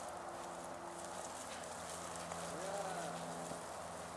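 Faint steady outdoor hiss and low hum, with one short, faint rising-and-falling vocal sound about three seconds in.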